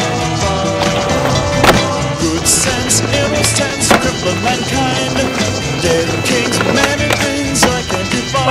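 Skateboard tricks on concrete: wheels rolling and several sharp clacks of the board popping and landing, over music.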